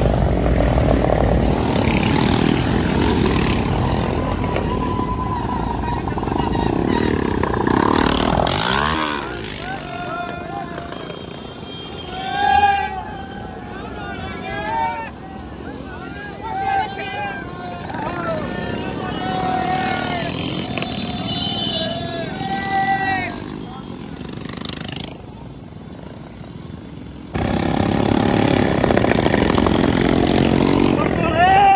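Motorcycle engines and road noise of a moving procession. From about ten seconds in, a voice chants in drawn-out, rising and falling phrases over quieter traffic. Loud engine noise returns near the end.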